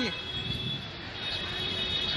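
Steady outdoor traffic noise, with a thin high whine coming in about halfway through.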